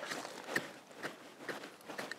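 Short-handled garden hoe working loose soil, a few soft, irregular scrapes and knocks as the blade chops and pulls dirt in to fill a gopher tunnel.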